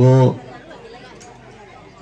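A man speaking into a microphone: one short drawn-out word, then a pause with faint background sound.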